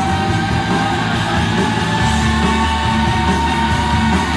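A live rock band plays electric guitars, bass and drums at full volume, heard from the audience. A held high note slowly climbs in pitch over the band.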